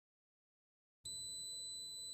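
A Pro-4 Secure Touch Lock fingerprint cable lock gives one long, steady high beep that starts about a second in. This is the lock's signal that the administrator fingerprint has been registered successfully.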